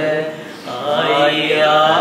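A man chanting an Urdu marsiya (elegy) in a slow, drawn-out melodic recitation. It breaks briefly for breath about half a second in, then the long sung line resumes.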